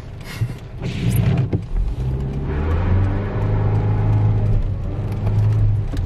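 Car engine revving hard as the manual car launches from the lights, briefly once about a second in, then held at high revs for several seconds with the tyres spinning on the wet road: an accidental burnout.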